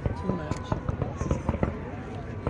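Fireworks display: aerial shells going off in a rapid, irregular string of pops and crackles over a low rumble.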